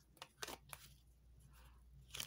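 Near silence with a few faint clicks of a tarot deck being handled in the first second or so.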